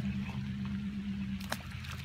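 A small fish tossed back into a pond lands with a short splash about a second and a half in, over a steady low hum.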